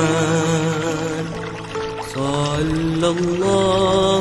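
Selawat, an Islamic devotional song in praise of the Prophet, sung in long melismatic held notes with vibrato, the voice sliding from one pitch to the next.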